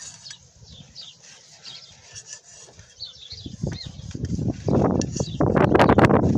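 Kitchen knife sawing through a tomato on a tile cutting board, quiet at first, then a run of louder rough rubbing and scraping strokes through the second half.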